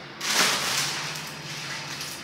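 Clear cellophane gift-basket wrapping crinkling as it is handled and pushed aside. It starts sharply about a quarter second in and fades away gradually.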